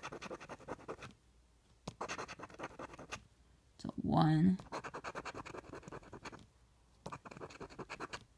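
A coin scraping the scratch-off coating from a paper lottery ticket, in quick rapid strokes. The scraping comes in several bursts with short pauses between them.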